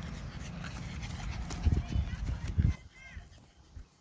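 A pug running on grass as it is chased, with a low wind rumble on the microphone and a few heavy thumps. The rumble cuts off suddenly about three seconds in, leaving it much quieter, with one short high-pitched sound.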